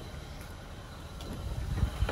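A low steady rumble with a faint hiss above it, growing a little louder near the end.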